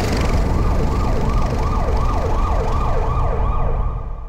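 A siren-like wail rising and falling about twice a second over a dense, deep bass rumble, as title-sequence sound design. The high end fades out near the end.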